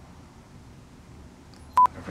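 Quiet room tone, then a single short electronic beep, one steady tone cut off sharply, near the end.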